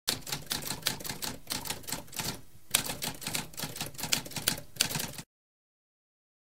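Typewriter typing: rapid key strikes in quick succession, with a short break about two and a half seconds in, stopping abruptly about five seconds in.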